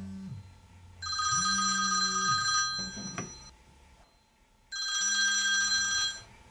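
Smartphone ringing with an incoming call: two rings of about a second and a half each, about two seconds apart, with a brief click between them.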